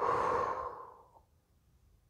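A woman takes one deep, deliberate breath, a sigh that is loudest at the start and fades out after about a second, done as a centring breath.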